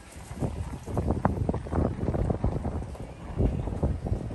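Irregular soft knocks and a low rumble of footsteps and handling noise as a handheld phone is carried toward a parked vehicle.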